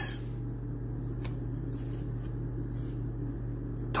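A steady low hum, with faint handling of trading cards: a light tick about a second in and another just before the end as a card is picked up.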